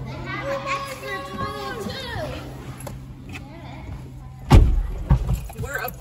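Children's voices, then a car door shutting with a single heavy thump about four and a half seconds in, followed by a couple of lighter knocks as someone settles into the 2021 Ford Bronco's driver's seat.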